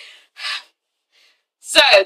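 A woman's short breathy gasp, an intake of breath, about half a second in, between her spoken phrases. Speech starts again near the end.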